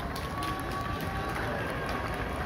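Quiet outdoor event ambience: faint distant voices over a low crowd murmur, with scattered light clicks and a faint thin held tone in the first half.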